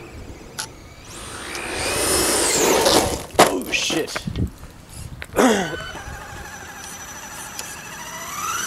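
Electric radio-controlled monster truck (Traxxas E-Revo) with its motor whining up in pitch as it accelerates and then falling away, with a few sharp knocks in the middle and a second, shorter whine that drops in pitch.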